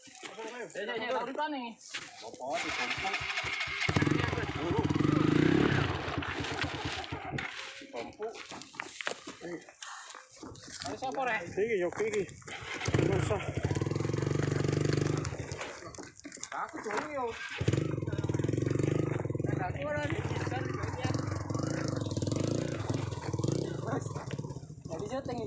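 Dirt bike engine run in three bursts of throttle, each a few seconds long, dropping away between them, with people's voices in the gaps.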